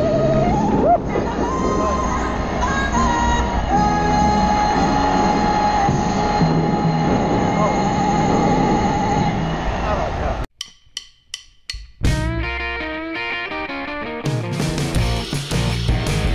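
Music with a long held, wavering note over a full accompaniment. About ten and a half seconds in it cuts out, leaving a second and a half of near silence with four clicks. A different song then starts, first with plucked guitar notes and then with a full rock band.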